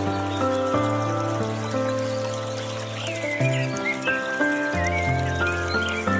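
Slow, gentle piano music with long held notes and a deep bass note changing every second or so, over trickling water from a bamboo water fountain. Short bird chirps come in and out above the piano.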